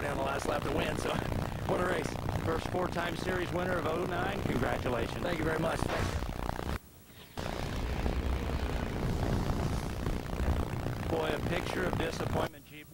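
A man talking over a steady low rumble of dirt late model race cars' engines running on the track. The sound drops out for about half a second at a cut near the middle. Afterwards the engine rumble is stronger, with little talk, until speech picks up again near the end.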